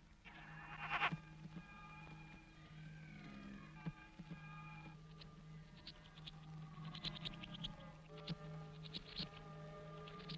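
Electronic sound effects: a steady low hum with sliding and warbling tones above it, joined in the second half by bursts of rapid, high chirping trills, an eerie alien-swamp soundscape.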